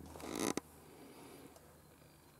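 A short breath-like hiss of about half a second, cut off by a sharp click, then near silence.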